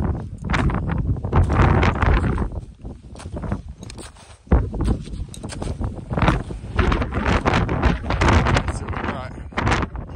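Gusting wind buffeting the microphone in loud, uneven surges, mixed with the crunch of a climber's steps in firm snow.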